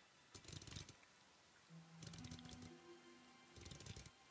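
Very faint mechanical clicking and ratcheting, like clockwork gears turning, in three short spells: the sound effect of a clockwork combat automaton being set in motion. A few faint low held tones come in the middle.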